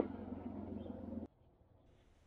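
A vehicle engine idling as a steady low hum, with one sharp click at the very start. The sound cuts off abruptly to near silence about a second and a quarter in.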